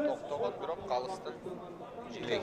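Indistinct men's voices talking in the background, with no clear words.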